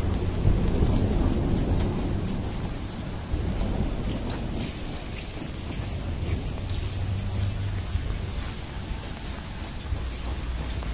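Wind rumbling on the microphone of a handheld camera being walked outdoors, with an even hiss and small scattered clicks of handling.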